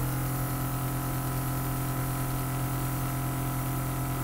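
Craftwell eBrush airbrush compressor running with a steady hum, and air hissing from the airbrush as it sprays liquid makeup.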